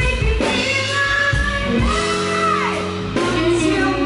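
Live blues-rock band playing with a woman singing. A long held note bends downward past the middle, over bass and drums.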